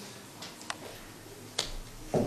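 Quiet hall with a few sharp, separate clicks of footsteps on a stage floor, the last and loudest near the end.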